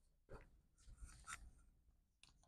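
Near silence with a few faint ticks and scratches of a dry-erase marker on a whiteboard.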